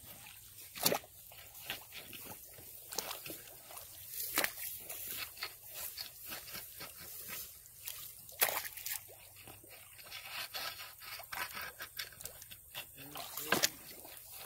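Wading and poking a rake through a shallow creek: irregular sloshing and splashing of water with scattered sharp clicks and knocks, the loudest about a second in, midway and near the end.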